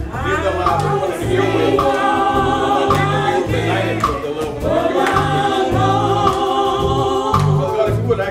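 Gospel singing by a small group of vocalists through microphones, with long held notes over a low, pulsing instrumental backing.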